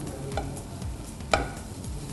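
A spoon stirring food in a pot on the stove over a low sizzle, with a few sharp clinks against the pot, the loudest about a second and a half in.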